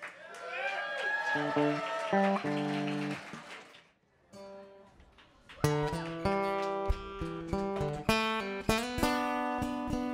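Voices and a laugh over a few low plucked notes, then a brief hush. About halfway through, an acoustic guitar starts strumming the opening chords of a song, with a steady rhythm of strokes.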